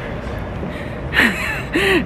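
A woman's breathy laugh: two short bursts of breath about a second in, over a steady low background rumble.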